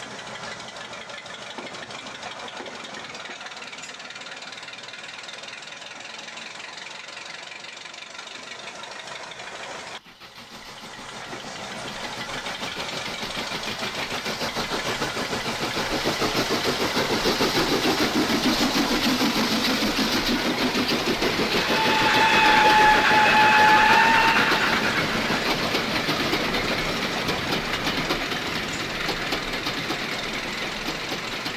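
Small diesel shunter's engine running with a knocking beat; after a break about ten seconds in, a louder diesel train sound builds up, and a horn sounds for about two seconds two-thirds of the way through.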